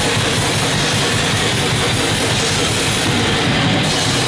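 Heavy metal band playing live at a steady, loud level: drum kit and distorted guitars in one dense wall of sound.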